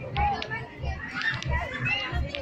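Children playing and chattering in high voices, over background music with a steady low beat about every two-thirds of a second.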